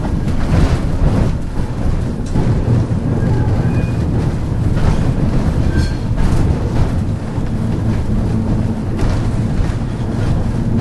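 Streetcar running along the track: a steady, loud low rumble of wheels and motors, with a few brief, faint high squeaks.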